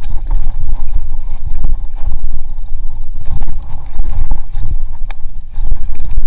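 Wind buffeting the camera microphone and the rumble and rattle of a GT Zaskar LE hardtail mountain bike riding fast down a rough dirt trail, with sharp knocks now and then as it hits roots and bumps.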